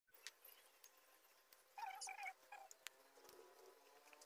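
Faint animal calls: two short pitched calls in quick succession about two seconds in, then a shorter third, over a few light clicks.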